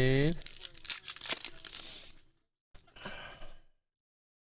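A short drawn-out vocal sound at the very start, then a foil Panini trading-card pack being torn open and its wrapper crinkled: a run of crackling until about two seconds in, and a shorter, quieter crinkle about three seconds in.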